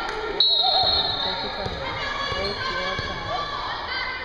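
A referee's whistle blows once, short and shrill, about half a second in, signalling the serve. Then a volleyball is bounced a few times on the gym floor, under crowd chatter.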